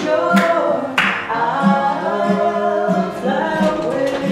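Voices singing a song without accompaniment.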